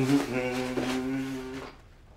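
A person's voice holding one long vocal sound at a steady pitch, cutting off after about a second and a half.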